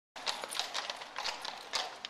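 Hooves of two horses pulling a carriage, clip-clopping on cobblestones as an uneven run of sharp knocks.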